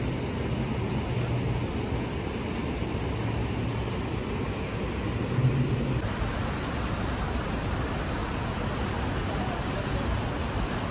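Iguazú Falls heard from a viewpoint: the steady rushing of the waterfalls, an even wall of noise that turns brighter and hissier about six seconds in.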